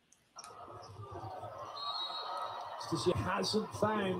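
Near silence, then the relayed sound of a volleyball match broadcast cuts in suddenly about a third of a second in, starting as a steady background of noise. A man's commentary voice comes in about three seconds in.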